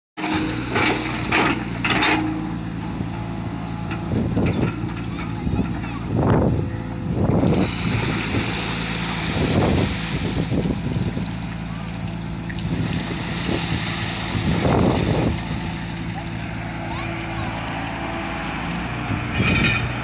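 Tata Hitachi hydraulic excavator's diesel engine running steadily, with louder swells every few seconds as the arm digs and lifts silt from the drain.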